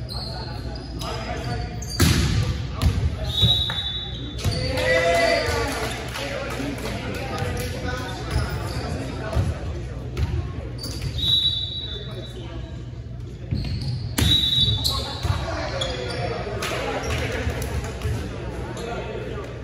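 Volleyball rally in a gymnasium: sharp slaps of hands and arms on the ball, and the ball hitting the hardwood floor, with echo in the hall. The biggest hits come about two seconds in and again near fourteen seconds. Between them are a few short high squeaks and players' shouts.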